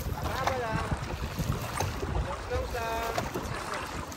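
Dragon boat moving under paddle: a steady rush of wind on the microphone and water noise, with two short calls from the crew, one about half a second in and one about three seconds in.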